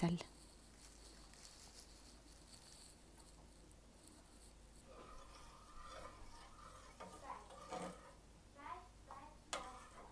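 Near silence at first, then faint background voices and a few soft knocks in the second half.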